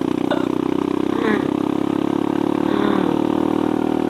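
Kawasaki D-Tracker 150 SE's single-cylinder four-stroke engine running steadily under load on a steep uphill climb, its pitch dropping slightly near the end.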